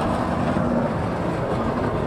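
Late model street stock race car engines running at low speed as the field circles under caution, a steady drone with a faint held engine note.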